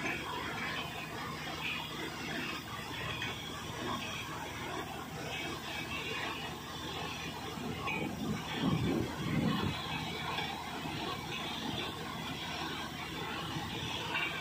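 Borewell drilling rig running at the borehole: a steady mechanical noise with a low hum, swelling briefly into a louder low rumble about eight to nine seconds in.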